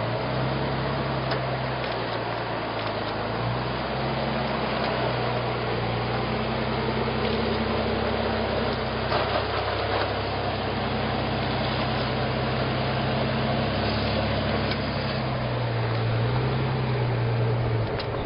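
Jeep Wrangler JK Unlimited's V6 engine running steadily at low revs as it crawls up sloping sandstone. The engine note rises and dips a little several times with the throttle.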